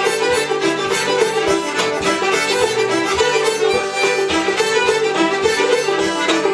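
Old-time string band playing a lively fiddle tune: several fiddles bowing the melody together with a diatonic harmonica, over the strummed rhythm of a six-string banjo and guitar with a steady beat.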